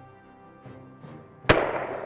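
A single loud shot from a 10 mm Glock pistol about one and a half seconds in, sharp, with a trailing decay, over steady background music.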